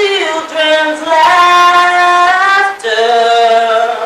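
A solo voice singing a slow melody in long held notes, in three phrases with short breaks between them.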